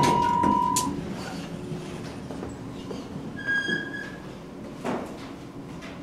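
Elevator sounds: a steady electronic beep lasting about a second as a car button is pressed, then the doors sliding, with a short higher-pitched chime about three and a half seconds in and a knock near five seconds.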